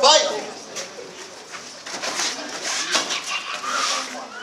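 Children sparring in kickboxing gloves in a small hall: a short loud vocal call at the start, then scattered thuds and slaps of punches, kicks and feet on the mat, with faint voices.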